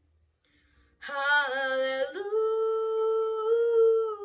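A ten-year-old boy singing unaccompanied. After about a second of near silence he sings a short syllable with vibrato, then one long held note that lifts slightly near the end.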